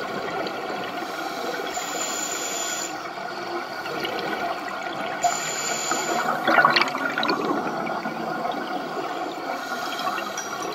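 Underwater sound of scuba breathing through a regulator: a steady watery rush, with two hissing breaths in, then a loud gurgling gush of exhaled bubbles about six and a half seconds in.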